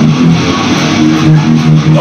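Electric guitar, amplified and played live, opening a rock song with a riff of short, repeated low notes stepping between a few pitches.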